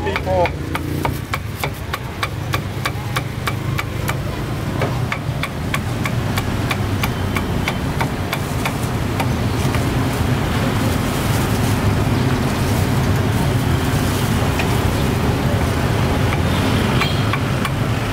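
A cleaver chopping on a wooden cutting board, a steady run of sharp chops at about three a second that thins out around the middle. Under it is a steady low rumble that grows louder in the second half.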